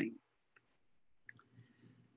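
A pause in speech: faint room tone with two small, sharp clicks, about half a second and a second and a quarter in.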